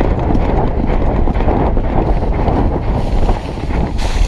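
Wind buffeting the microphone of a rider-mounted action camera on a galloping racehorse, with the horse's hoofbeats under the rush.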